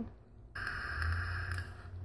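A draw on an e-cigarette (Innokin iSub Apex tank on a Cool Fire 4 mod): a steady airy hiss of air pulled through the tank's airflow while the coil fires, lasting about a second and a half from about half a second in, with a small click near its end.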